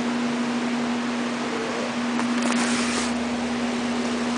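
Steady mechanical hum with a constant low tone over an even hiss, as from running ventilation or refrigeration machinery.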